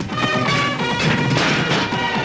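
Dramatic film background score with sustained tones, overlaid with loud fight-scene impact and crash sound effects, with hits about a second in and again around a second and a half.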